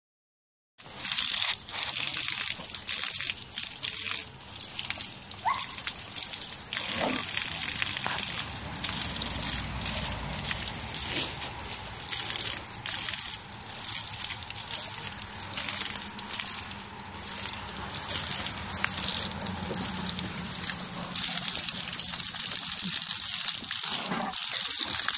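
A stream of water from a garden hose gushing and splashing as a black bear bats and paws at it. The splashing starts about a second in and wavers unevenly.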